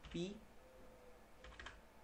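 A few faint computer keyboard keystrokes, close together, about one and a half seconds in.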